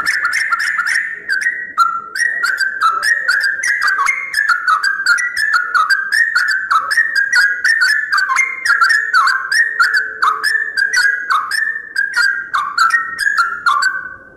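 Yellow-vented bulbul singing: a fast, unbroken run of short notes that hop up and down in pitch.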